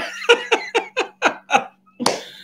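A man laughing: a run of about seven short "ha" bursts, about four a second, fading out towards the end.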